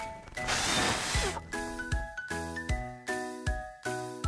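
Light, chiming background music for children with a steady beat. About half a second in, a brief whoosh of noise lasting about a second briefly covers the music.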